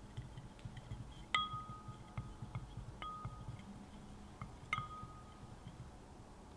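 A wooden spoon stirs liquid in a glass tumbler, clinking against the glass half a dozen times so it rings with a clear tone. The two loudest clinks come about a second and a half in and near five seconds in, with a soft stirring scrape between.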